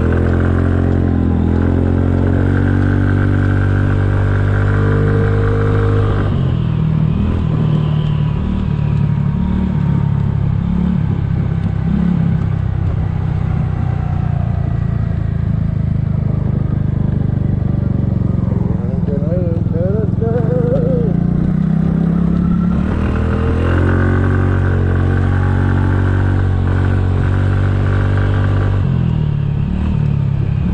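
Engine of a 2007 Kymco 250cc single-cylinder four-stroke scooter running under way. Its note climbs as it accelerates over the first few seconds, then settles lower while cruising. It climbs again and holds about three quarters of the way through, dropping off near the end.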